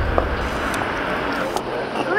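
City street ambience: a steady traffic hum with a low rumble that fades in the first half second, and a couple of faint clicks.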